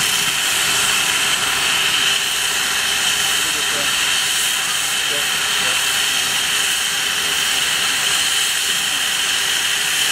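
Steam locomotive Western Maryland 734 venting steam: a steady, even hiss that holds without a break.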